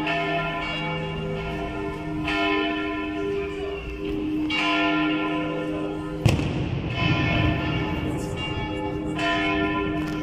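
Church bells ringing, with new strikes roughly every two seconds and their tones ringing on and overlapping. A sharp bang cuts in about six seconds in.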